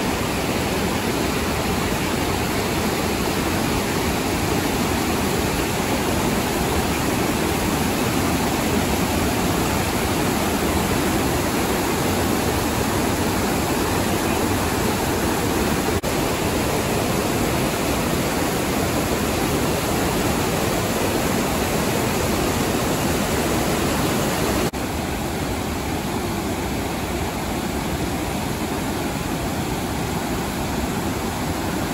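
Whitewater rapids of the Menominee River rushing over rock ledges, a steady loud wash of water noise. It becomes a little quieter about 25 seconds in.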